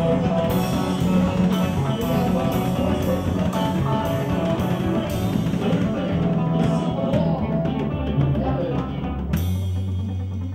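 Live rock band playing electric guitar, bass and drum kit, with cymbal hits about twice a second. Near the end the band lands on a final struck chord that rings out as the song finishes.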